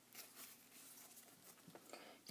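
Near silence with faint, soft rustling of trading cards being slid and handled.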